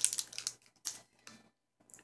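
A few light clicks and crinkles from handling a plastic-packaged card of wooden craft buttons, mostly in the first second or so.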